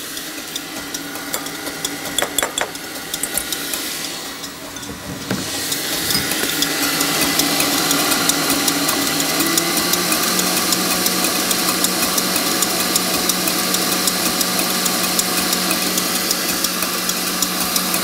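Electric stand mixer whisking egg whites and sugar into meringue, its motor and balloon whisk running steadily in a steel bowl. About five seconds in it grows louder and a steady hum sets in.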